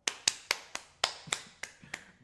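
A quick run of about eight sharp, evenly spaced taps, roughly four a second.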